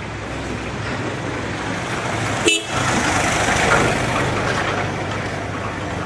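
Road traffic: a steady engine hum, a short horn toot about two and a half seconds in, then a vehicle passing, its rush swelling and fading.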